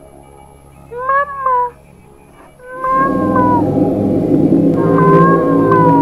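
A high, wavering voice calls out once, sliding down at the end, about a second in. About three seconds in, eerie droning music swells up, with long wailing tones over it.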